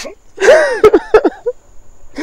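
A man crying out in a sob: a sharp breath, then a loud wail whose pitch rises and falls, broken by short catches of breath.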